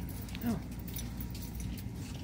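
Steady low hum of a shop's background noise, with a few faint light clinks.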